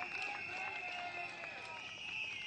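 Scattered clapping and faint voices from an audience during a pause in a rally speech, over a steady high-pitched tone.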